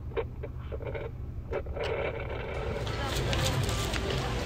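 Steady low rumble of a car's cabin with a few faint clicks, then about two and a half seconds in a switch to an outdoor murmur of people's voices.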